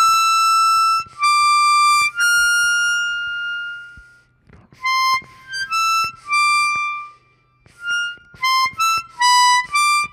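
Chromatic harmonica playing slow, clean single notes in thirds around hole 9 blow C, some of them held long. The notes come in two runs, the second starting about five seconds in. The line climbs (C–E, D–F) instead of descending as the exercise intends, a mistake the player admits just afterwards.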